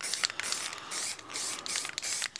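Aerosol can of black spray paint hissing in a run of short bursts as a thin first coat goes onto cured expanding foam.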